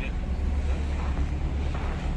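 Steady low rumble of car engines idling in a cold car park, with wind on the microphone.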